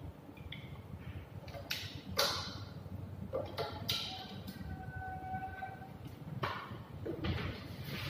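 Scattered knocks and rustles of objects being handled, a handful of separate sharp sounds over a steady low room hum.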